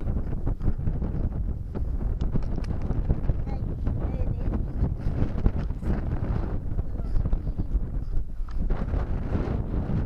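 Wind buffeting the camera's microphone: a constant, dense low rumble with gusty flutter.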